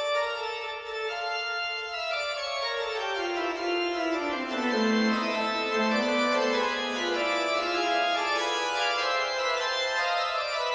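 Pipe organ playing full sustained chords, with a lower voice stepping down from about three seconds in and settling into a held low note halfway through.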